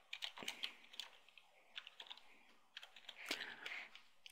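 Faint typing on a computer keyboard: a run of irregular keystrokes as a short word is typed.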